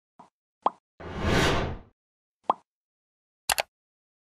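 Animated logo-intro sound effects: short pops, a whoosh of about a second shortly after the start, another pop, then a quick double click near the end, in time with an on-screen subscribe button being pressed.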